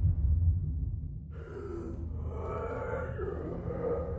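Horror film trailer sound design: a low rumble dies away, and from about a second in several eerie, wavering tones rise over it and hold.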